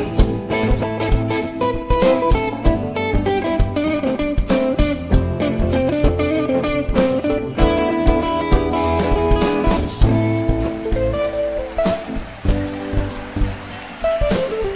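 Live band instrumental break: hollow-body electric guitar lead lines over upright bass and a drum kit with cymbals, in a bluesy jazz feel. The playing softens near the end.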